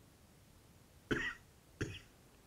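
A person coughing twice in a near-silent room, two short coughs a little over half a second apart, the first the louder.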